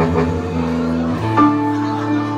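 A live band playing with held keyboard chords over low bass notes that move to a new note about a second in.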